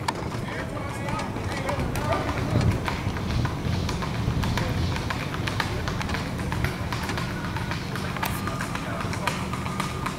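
Hooves of several Tennessee Walking Horses clopping on an asphalt road, a quick, irregular patter of clicks, over the low rumble of a slow-moving vehicle.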